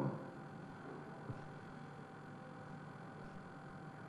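Faint steady room tone with a thin, constant electrical hum, and a single small tick about a second in.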